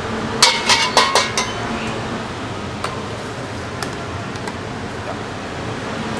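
A steel wok ladle clinks and rings against a carbon-steel wok several times in quick succession within the first second and a half, then taps a few more times lightly. Underneath is the steady rushing noise of the high-flame gas wok burner.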